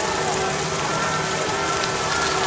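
Rain falling steadily, an even dense hiss, over a large bonfire burning.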